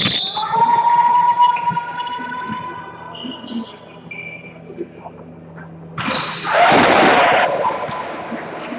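Echoing sounds of an indoor volleyball match in a large gym: a sharp hit right at the start, a long held call, then a loud burst of crowd and player noise about six seconds in.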